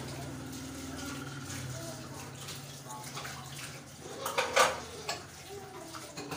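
Handling noise while garnishing halwa on a steel platter, with one brief clatter about four and a half seconds in. A low steady hum and faint voices run underneath.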